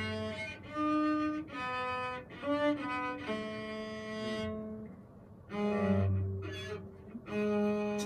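Cello played with the bow: a slow line of held notes, each about half a second to a second long, with a short break about five seconds in. It is a beginner's practice playing.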